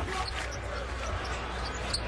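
Basketball arena crowd noise during live play, with a ball being dribbled on the hardwood court.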